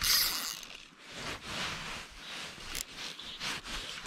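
Fly line rubbing through the rod guides and the angler's fingers as it is cast and stripped: a brief rushing hiss at the start, then soft, uneven scraping and rustling.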